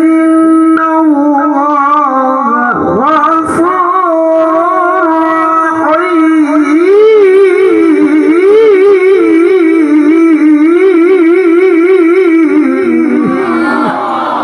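A man reciting the Quran in the melodic tilawah style through a microphone. He holds long steady notes, then from about halfway through sings a long run of rapid wavering ornaments, and the phrase ends just before the close.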